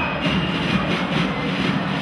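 Steady din of a packed carnival crowd, many voices at once.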